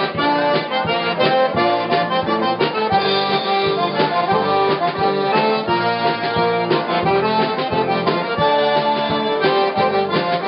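A Cajun diatonic button accordion and a fiddle play a lively Cajun dance tune live, over a steady drum beat.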